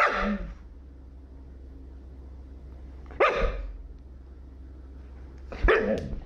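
White husky barking close to the microphone: three separate barks about two and a half seconds apart, each short and dropping in pitch.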